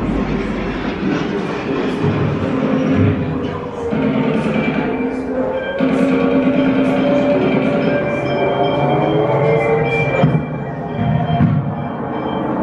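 Recorded soundscape from a museum sound installation that simulates the wartime deportations: train noise mixed with music and voices, playing steadily and loudly throughout.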